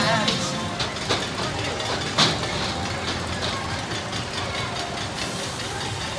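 Steel Pinfari Zyklon coaster train running along its track with a rumble and intermittent clanks, the loudest about two seconds in, over voices and faint music.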